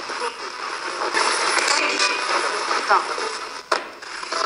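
Ghost box (spirit box) radio sweeping through stations: choppy hissing static broken by clipped fragments of radio sound, with a sharp click a little before the end.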